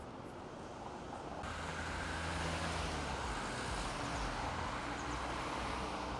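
Street traffic: engine hum and tyre noise from passing vehicles, growing louder about a second and a half in.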